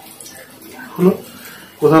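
A man's speech pausing, with one short vocal sound about a second in and talk resuming near the end, over a faint steady background hiss.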